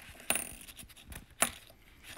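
Metal coins clinking against each other as they are handled and set down: a ringing clink a moment in, a small tap, then a sharper, louder clink about a second later.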